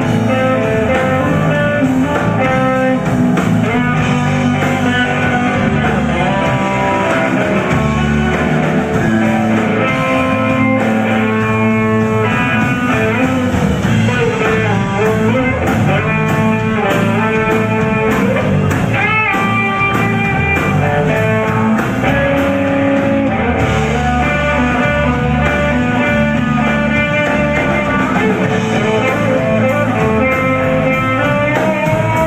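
Live electric blues band playing an instrumental passage: electric guitar leads with bent notes over bass guitar and a drum kit.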